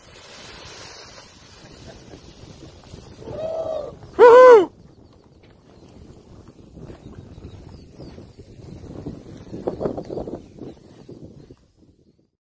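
Two short high shouts of cheering about three and a half and four and a half seconds in, the second brief and loud, over wind noise on the microphone; faint rustling and distant low voices follow.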